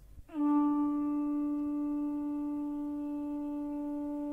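One long held note from a horn-like wind instrument, starting suddenly about a third of a second in with a slight dip in pitch, then sustained at a steady pitch.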